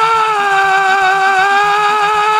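A voice holding one long, steady 'faa' (ファー), the internet-slang cry of laughing delight, over background music with a low, evenly repeating beat.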